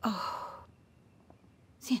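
A woman's sigh: one loud, breathy exhalation of about half a second at the start, falling in pitch.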